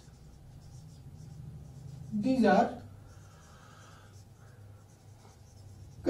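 Marker pen writing on a whiteboard, faint scratching strokes, with a brief spoken word about two seconds in.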